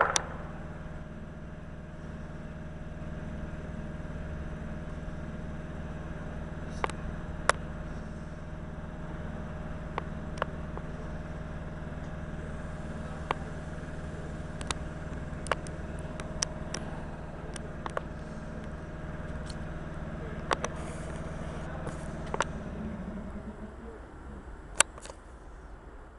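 Electric multiple unit standing at the platform, giving off a steady electrical hum with a low tone and a higher whine, dotted with short sharp clicks. The hum drops away near the end.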